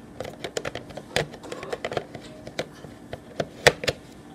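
Irregular small clicks and taps from hands handling a Nikon DSLR with an old manual lens mounted, fingers working the metal lens barrel. The two loudest clicks come about a second in and near the end.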